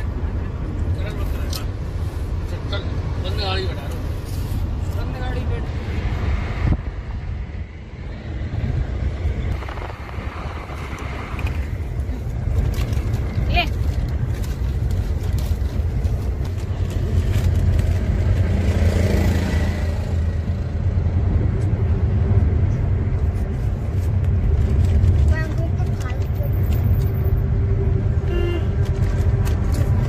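Steady low road and engine rumble of a moving car, heard from inside the cabin, with soft voices now and then.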